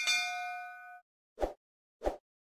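A notification-bell 'ding' sound effect: one bright strike with several ringing tones that fade out after about a second. A short soft pop follows about a second and a half in.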